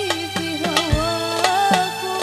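Live hadroh modern music: a woman sings a sholawat melody into a microphone over sustained accompaniment, with frame drums and hand drums striking a steady beat under her voice.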